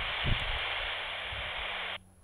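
Steady static hiss from a TIDRADIO TD-H5 GMRS handheld's speaker: an open FM channel with no one talking, received through a distant repeater. It cuts off suddenly near the end.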